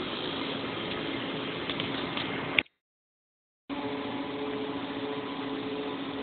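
Steady machine hum of outdoor cell-site equipment cabinets and their cooling air conditioner, with a low steady tone. It cuts out to dead silence for about a second just past the middle, then comes back with the low tone stronger.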